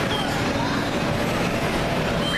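Steady rumble and hiss of the electric blowers that keep indoor bounce houses inflated, with children's distant shouts and chatter echoing in the large hall.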